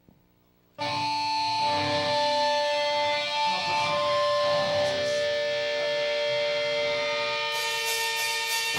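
Amplified electric guitar comes in suddenly about a second in after a brief silence, chords left ringing with long held notes that change slowly: the slow opening of a live hardcore song before the rest of the band joins.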